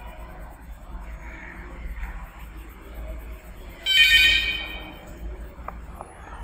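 A coloured pencil scratching on a workbook page as it shades in, over a low steady hum. About four seconds in, a sudden loud high-pitched tone sounds and fades out over about a second.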